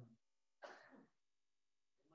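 A man clears his throat once, briefly, into a handheld microphone a little over half a second in; otherwise near silence.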